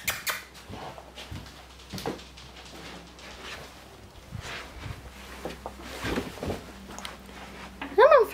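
Footsteps and camera-handling noise as someone walks down stairs: a scattered series of soft knocks and thumps, with a few louder ones in the second half.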